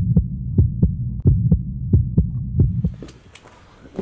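Logo intro sound effect: a low hum under a quick run of deep thumps, about three to four a second, that fades out about three seconds in and leaves a faint airy hiss.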